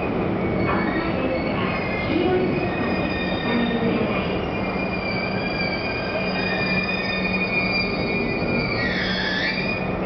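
JR East E233-series electric train pulling into the platform and braking to a stop, with a steady rumble and several high whining tones held throughout. About nine seconds in, as it stops, the high whine dips in pitch.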